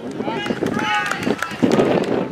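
Baseball spectators cheering and yelling after a batted ball, many voices at once with several high, drawn-out shouts in the first second and a half.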